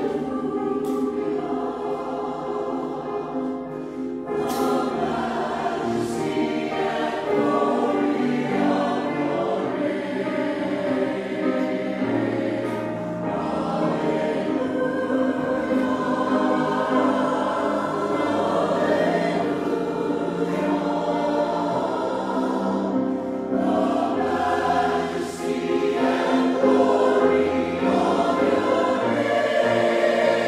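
Mixed church choir of men and women singing a hymn, with sustained sung notes and a lower accompaniment line that changes every few seconds.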